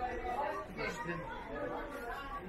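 Voices of several people talking at once: background chatter, with no single clear speaker.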